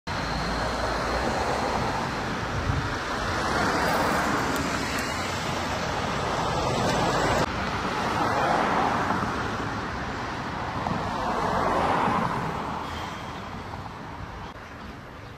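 Street traffic: several cars pass one after another, each swelling up and fading away, over a steady road hum.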